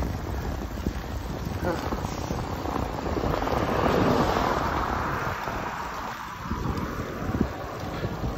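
Wind rushing over the camera microphone of a road bike on the move, with road noise underneath; the rushing swells about halfway through and then eases off.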